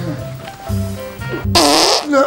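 A loud comic fart sound effect lasting about half a second, starting about a second and a half in, over light background music.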